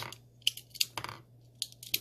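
Brass 9mm pistol cartridges clicking against a pistol magazine and a plastic cartridge tray as rounds are handled one by one: a series of sharp, separate clicks, several close together near the end.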